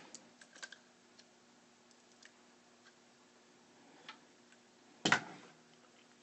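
Small clicks and knocks of the 3D printer's plastic extruder head being handled and lifted off its carriage, with one louder clunk about five seconds in.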